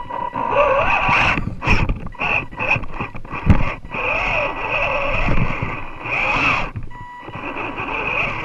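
Radio-controlled rock crawler's motor and gears whining, the pitch rising and falling as the throttle changes. Under the whine there is rattling and scraping of the wheels and chassis on rock, with one sharp knock about three and a half seconds in.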